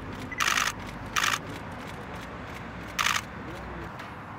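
Camera shutters firing in three short rapid bursts, about half a second, a second and three seconds in, over a steady low background hum.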